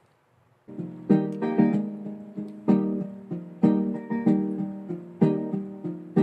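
Acoustic guitar playing the intro chords of a song, starting about a second in, each chord struck and left to ring out.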